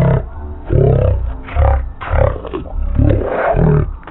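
A cartoon cat character's voice slowed to quarter speed: very deep, drawn-out sounds with gliding pitch, the words unintelligible, coming in several long phrases with short gaps between them.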